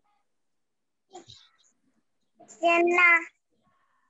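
A high-pitched voice calls out two drawn-out syllables about two and a half seconds in, after a faint brief sound just over a second in.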